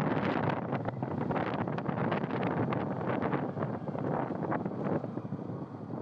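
Wind buffeting the microphone of a moving motorcycle in uneven gusts, over the steady rush of the ride. It eases a little near the end.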